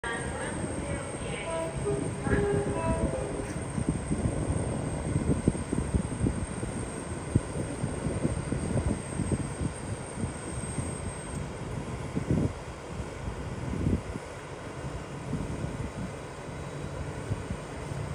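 Rumble of a freight train hauled by a Class 88 locomotive approaching through a station, with a few short pitched notes in the first three seconds.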